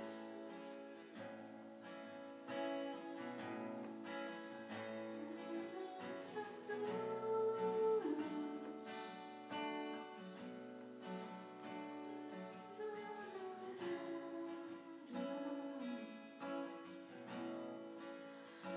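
Acoustic guitar strumming a slow pop ballad, with a voice singing over it in places.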